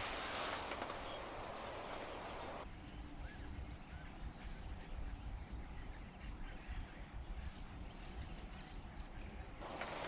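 Faint calls of a flock of small birds flying overhead, a few short chirps, over a low background rumble.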